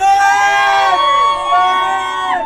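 Crowd of spectators cheering and shouting, loud, with many high voices in long overlapping calls.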